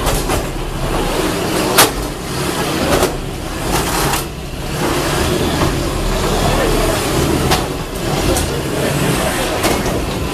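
Small combat robots fighting in an enclosed arena: motors driving, with several sharp impacts as they hit each other or the walls, the loudest about two seconds in. A crowd chatters throughout.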